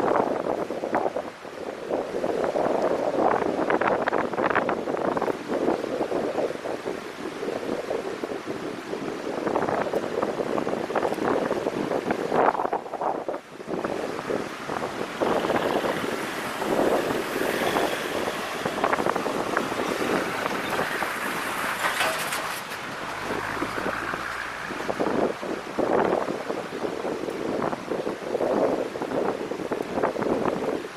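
Wind buffeting the camera's microphone in uneven gusts, with a brief lull about halfway through.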